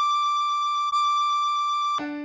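Tin whistle playing two high D notes in its second octave, each held with a steady, pure tone; the second is re-tongued about a second in.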